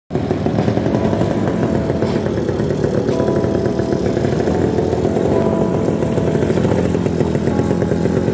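Vintage motorcycle engine running with a steady, rapid firing beat as the bike rides slowly over cobblestones.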